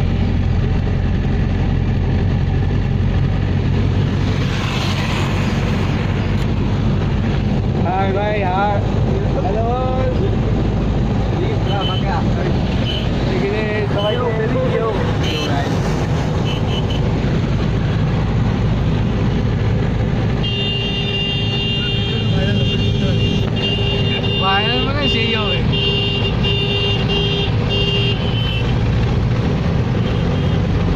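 Steady low rumble of engine and road noise inside a moving car. Voices talk at times, and a steady high tone sounds for several seconds in the second half.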